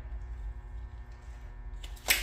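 A steady low hum with a faint click near the end.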